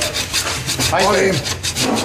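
Hand scraper rasping in quick strokes against a glass door pane, stripping off the remains of old posters and paste.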